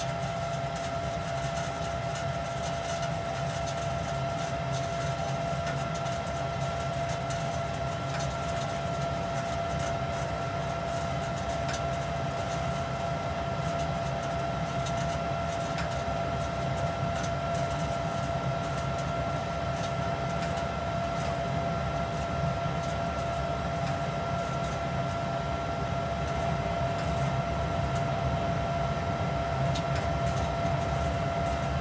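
Lennox SLP98UHV variable-capacity condensing gas furnace running at full fire: a steady low rumble of burner and moving air with a steady whine. The draft inducer is at full speed and the blower fan is ramping up, and the sound grows slightly louder towards the end.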